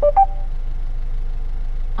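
A short two-note electronic chime, the second note higher, from the Mercedes MBUX infotainment system acknowledging a voice command. Under it runs the low steady hum of the car's engine.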